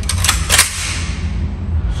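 A Romanian AK-pattern rifle being charged: a few light metallic clicks as the bolt carrier is pulled back, then, about half a second in, a loud clack as it is let go and slams forward, chambering a round. The clack rings on briefly.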